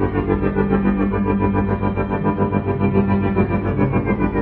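Layered, looped violin drone played through effects pedals: dense sustained tones over a steady low note, pulsing about four times a second, with falling glides in the upper layers.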